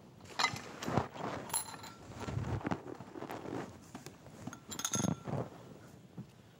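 Props being handled on a table: soft knocks and shuffling, with a brief glass clink about one and a half seconds in and another near five seconds.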